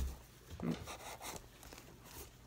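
Faint scratching and small clicks of fingernails picking at packing tape on a small cardboard shipping box.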